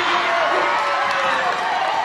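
A crowd of boys shouting and cheering in celebration, many young voices overlapping in a steady hubbub.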